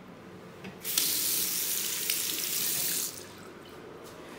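Bathroom faucet turned on, water running into a sink basin for about two seconds, then shut off abruptly.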